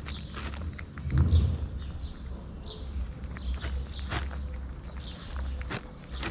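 A cat crunching dry kibble close up: irregular sharp crunches over a steady low rumble, with a louder low thump about a second in.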